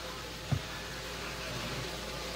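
Steady hiss and low hum from a live public-address sound system with an open microphone, with one brief low thump about half a second in.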